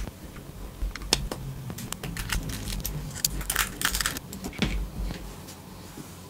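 Small plastic parts being handled and pushed together: the Heltec Wireless Capsule's GPS module slotted back into its plastic housing. Irregular light clicks and taps that die away about five seconds in.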